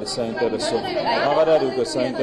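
Speech only: a man speaking at a podium.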